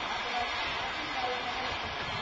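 Faint distant voices over a steady outdoor hiss.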